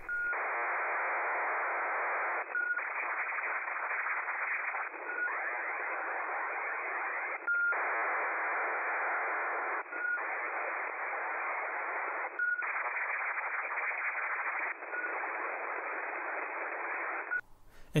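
HFDL (High Frequency Data Link) aircraft data signal on 8942 kHz, received on a KiwiSDR web receiver: a dense, steady hiss-like data sound held within the voice band. It is broken by short gaps about every two and a half seconds, each gap marked by a brief tone.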